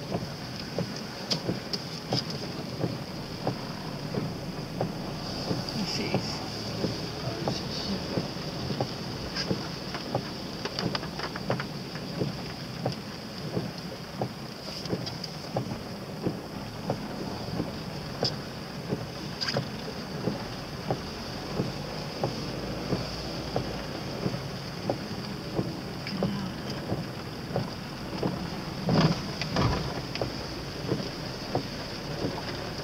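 Cyclone wind and rain heard from inside a moving car: a steady rush of wind and road noise, with irregular taps of raindrops hitting the car and a louder cluster of hits near the end.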